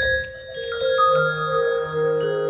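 Synthesized music from a PlantWave device wired to a mushroom: held notes that enter one after another, a low note joining about a second in. The notes are generated from slight electrical variations the device picks up in the mushroom.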